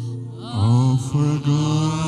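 A man's voice singing slowly in long held notes, sliding up into a new phrase about half a second in, as in a worship song.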